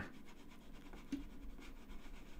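Faint scratching from a hand dragging a computer pointing device while painting, with a small brief sound about a second in.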